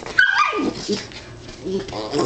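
A dog gives a short, high yip that falls in pitch about a quarter second in, during play between two dogs.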